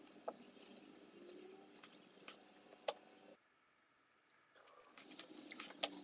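Utility knife trimming the rubber mouse-pad backing flush around a wooden push block: faint scraping cuts and small clicks, with one sharper click about halfway through, then a brief dead gap.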